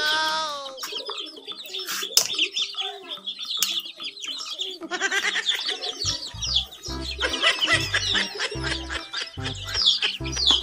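A flock of chicks peeping, a dense chorus of short high chirps that thickens about halfway through, over background music whose low beat comes in about six seconds in.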